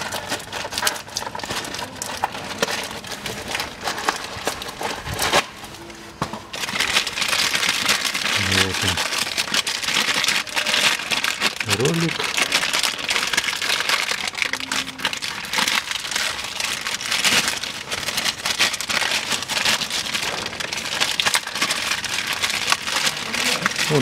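Thin plastic bag crinkling and rustling in the hands as a new pulley is unwrapped from it. The rustle grows dense and louder about six seconds in.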